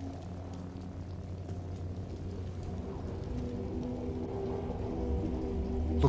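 Low, held orchestral chords from the film score, played quietly. Under them runs a steady rain-like hiss of wind, rain and sea spray from the stormy wreck scene.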